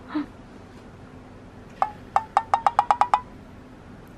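One sharp tap, then a quick run of about eight sharp, pitched taps that speed up and rise slightly in pitch before stopping.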